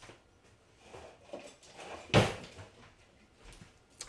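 Faint kitchen handling sounds while a knife is fetched, with one short, sharp knock about halfway through.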